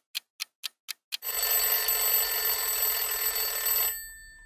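A clock ticking about four times a second, then, about a second in, a mechanical alarm clock bell starts ringing. The ringing is steady and loud and cuts off near the end, leaving a single tone fading out.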